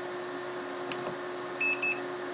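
Two short, high electronic beeps in quick succession near the end, from bench test equipment, over a steady electrical hum.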